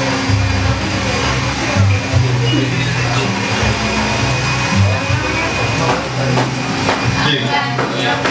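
Chatter of several voices mixed with music, with low bass notes that shift in steps, at a steady loud level.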